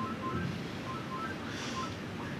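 A pause between spoken sentences: steady faint room hiss, with a few faint short high tones.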